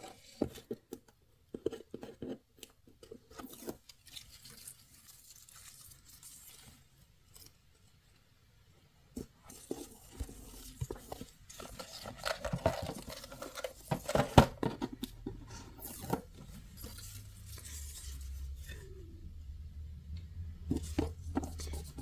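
Hand-handling noises of crafting: scattered light taps, rustles and scrapes as satin ribbon is pulled from its spool and laid across a cardboard box. A short quiet pause comes about a third of the way through, and the handling grows busier afterwards, with the loudest taps in the second half.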